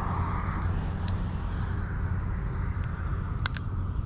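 Steady low rumble of road traffic, with a few faint clicks about three and a half seconds in.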